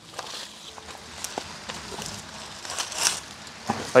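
Soft rustling and shuffling of a person moving about, with a few brief scuffs over a faint outdoor hiss.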